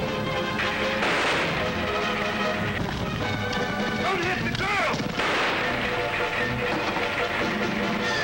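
Old film soundtrack of orchestral chase music with gunshots and clattering action effects, and a high wavering horse whinny about halfway through.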